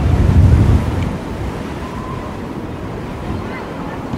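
Wind gusting across the microphone: a heavy low rumble for about the first second that eases into a steadier rush.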